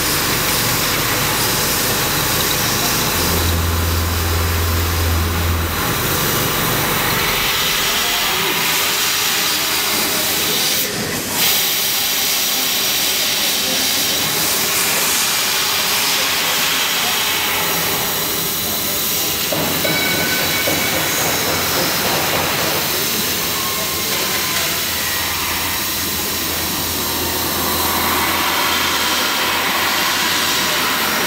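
Fiber laser cutting machine cutting rows of holes in carbon steel sheet: a steady hiss of assist gas from the cutting head. A low hum swells for a few seconds near the start, and there is a short crack about eleven seconds in.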